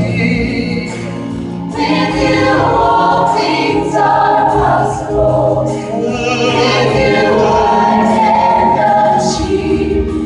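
Gospel choir singing a worship song together with a live band, the massed voices over a steady bass line. The music drops briefly softer about a second in, then swells back up.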